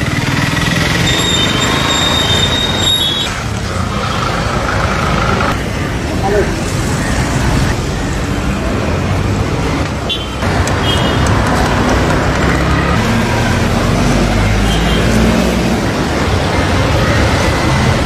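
Street traffic noise with indistinct voices from people nearby, and a thin high squeal during the first few seconds.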